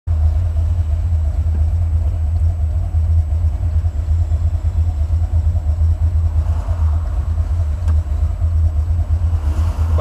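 Buick 455 Stage-1 big-block V8 in a 1987 Regal idling, a steady deep rumble heard from inside the car's cabin.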